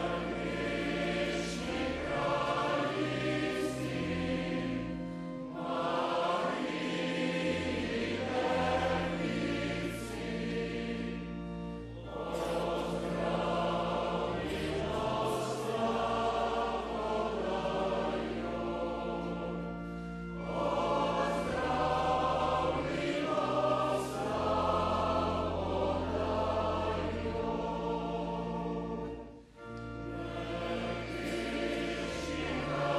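Male-voice choir singing sustained chords, with held low bass notes under the harmony. It sings in phrases, with short breaks about twelve and twenty seconds in and just before the end.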